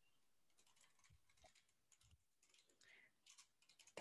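Near silence with faint, scattered clicks of typing on a computer keyboard.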